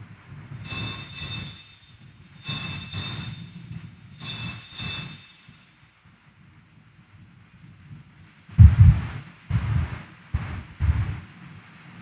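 Altar bells rung three times for the elevation of the consecrated host, each a short bright metallic ring. A few dull low thumps follow near the end.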